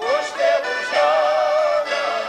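Band music: a melody line slides up at the start, then holds a long note with vibrato over the accompaniment.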